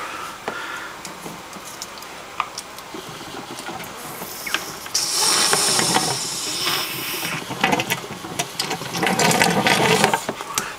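Water pouring from the end of a corrugated hose into a plastic tub, starting about five seconds in and loudest for the next two seconds, then running on more weakly. It is tap water coming out hot after passing through a pipe in a salt heat store. Scattered clicks and knocks from handling the hose.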